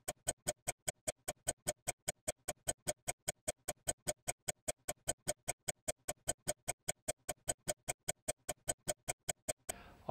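Clock-ticking sound effect: rapid, even ticks about five a second, marking time passing. The ticks stop shortly before the end.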